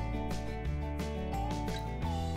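Background music only: a country-folk instrumental with held melody notes over a bass line that changes note a few times.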